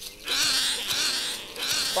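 Binturong (bearcat) giving a hissing growl: one long burst of about a second, then a shorter one near the end. It is a defensive warning at being approached closely.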